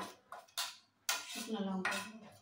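A spoon scraping and tapping against a plate as food is spooned off it, with a few sharp clinks of crockery. The loudest clink comes just past the middle.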